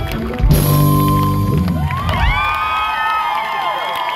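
A live rock band hits a final chord that rings out and fades, then the audience cheers and whoops.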